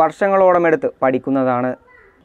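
Only speech: a young man talking in Malayalam, breaking off briefly near the end.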